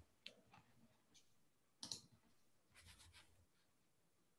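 Near silence with a few faint, short clicks, the clearest a little under two seconds in.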